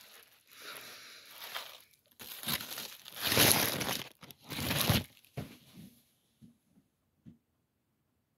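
Crinkling and rustling of a foil sandwich wrapper being handled, in several noisy bursts that are loudest about three to five seconds in and die away about six seconds in.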